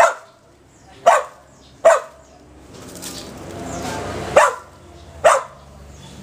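A dog barking sharply five times in uneven bursts, two close pairs and a gap, while nosing into a heap of dry leaves and brush, with a faint rustle of the dry leaves between the barks.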